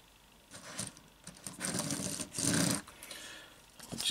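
Hands handling a small plastic action figure: a few short scraping and rubbing sounds, the loudest about two seconds in, as the figure is picked up and turned over.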